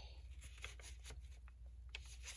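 Faint rustling and a scatter of light ticks as sheets of paper are slid and squared against each other on a paper trimmer.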